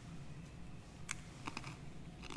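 A few faint, sharp clicks and clinks, one about a second in and a quick pair about half a second later, from the chalice and altar vessels being handled and set down after communion, over a faint low room hum.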